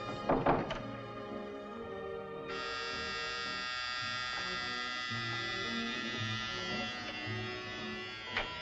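Music playing, with a loud accent about half a second in. About two and a half seconds in, an electric door buzzer starts: a steady, flat buzz held for about five seconds over the music.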